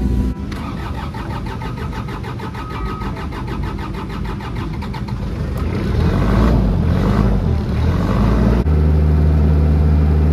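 Still forklift engine being cranked on the starter with a rapid, even beat, then catching unevenly about six seconds in and settling into a steady run for the last second or so, as it is tried after a fuel filter change.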